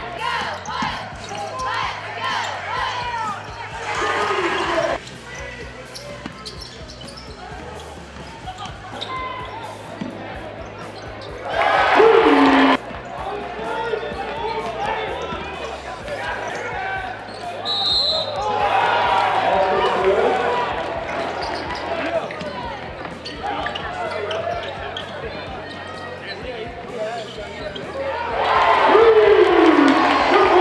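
Basketball game sound in a gym: a ball bouncing on the hardwood court over a murmur of crowd voices. The crowd swells into short, loud cheers about twelve seconds in and again near the end.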